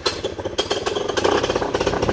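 Fresh Breeze paramotor engine catching on a single pull of the starter cord, starting suddenly and running steadily at idle with a fast, even firing.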